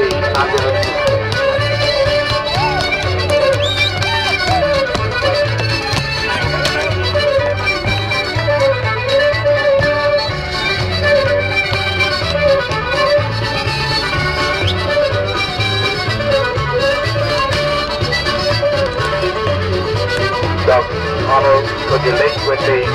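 Traditional Irish dance music led by a fiddle, playing steadily in a lively rhythm, with the dancers' shoes tapping out steps on a wooden dance board.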